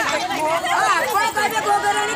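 Several women's voices talking and calling out at once, overlapping into chatter.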